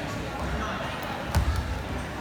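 Indistinct chatter of voices echoing in a gym hall, with a sharp, heavy thud a little over halfway through and a smaller one right after.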